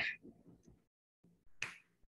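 A single short, sharp click about a second and a half in, as the presentation slide is advanced on the computer. The tail of a spoken "okay" is at the very start.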